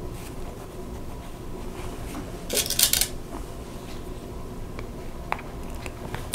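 Hands handling fabric and pins: a short rustle about halfway through and a faint click near the end, over a steady hum.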